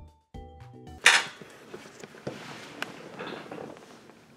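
A short run of music notes fades out, then a sudden loud rustle about a second in. Quieter handling noise follows, with a few soft clicks and knocks, as the camera is picked up and carried through a small room.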